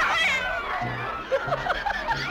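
A cat meows once, a falling cry near the start, over background film music with a bouncing bass line.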